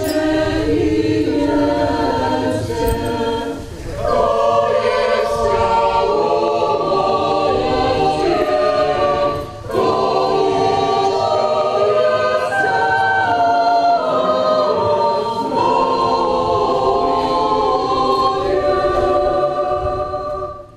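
A choir singing a hymn in long held phrases, with short breaks about four and ten seconds in.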